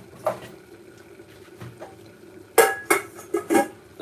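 Crockery and cookware being handled: a ceramic plate and metal pots knocking and clinking, a few light knocks at first, then a quick run of clatters in the last second and a half, the first of them the loudest.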